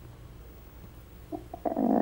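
A pause in a woman's speech over a telephone line, with only a faint low hum. Her voice comes back about one and a half seconds in, thin and narrow-sounding as through a phone.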